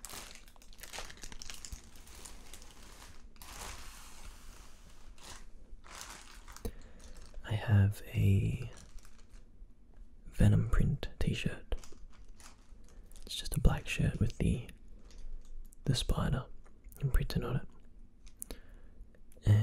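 Crinkling and rustling of a clear plastic bag around a packaged T-shirt as it is set down and handled, steadiest in the first few seconds, with a soft voice in between.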